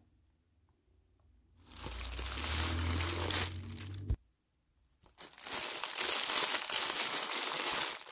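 Thin clear plastic bag crinkling as a soft clutch bag is pulled out of it by hand. It comes in two stretches of about two and three seconds with a second of silence between them, and the first stops abruptly.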